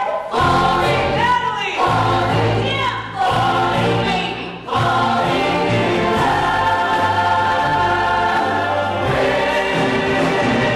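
A choir of many voices singing with orchestral accompaniment: short sung phrases, then one long held chord from about halfway through.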